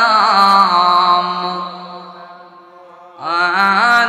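A man's voice chanting a long, drawn-out melodic line into a microphone over a PA system. The held note fades away about halfway through, and the chant picks up again near the end.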